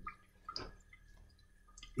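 Quiet room with a low hum and a few faint, short clicks about half a second in and again near the end.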